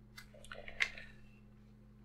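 Faint rustling and a few small clicks from hands moving the cloth costume and plastic body of a skeleton Halloween decoration, mostly in the first second, the clearest click a little under a second in.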